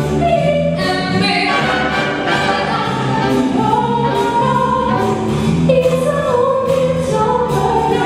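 Female vocalist singing live into a handheld microphone, backed by a big band.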